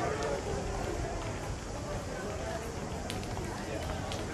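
Pedestrian street ambience: a steady murmur of indistinct voices from people around, with footsteps and a few light clicks.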